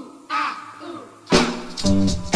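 Opening of a 1960s R&B dance record: a hoarse shouted 'ah' from the singer, then about a second and a half in the full band comes in loudly with drums and bass.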